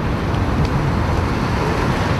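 Steady road traffic noise from cars driving past on the highway.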